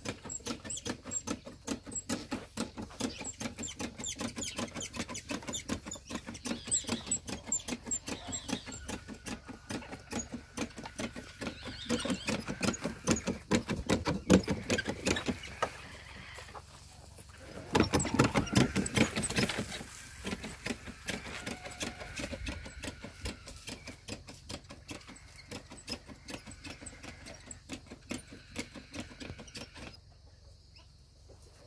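Manual knapsack sprayer being pumped while spraying a calf: a fast, continuous run of squeaky clicks from the pump, louder for a few seconds twice near the middle.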